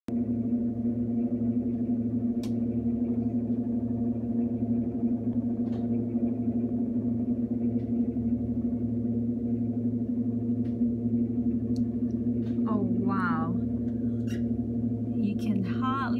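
A steady machine hum of several held low tones, heard from inside a railway carriage while it is being jacked up for its bogies to be exchanged at a gauge change. A few faint clicks, and a short voice about thirteen seconds in.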